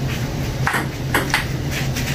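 Table tennis rally: a ping-pong ball clicking off the paddles and the table, four quick hits in two seconds.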